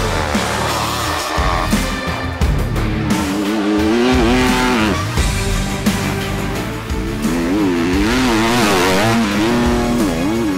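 Enduro dirt bike engines revving hard, the pitch swinging up and down again and again as the throttle is worked, over background music.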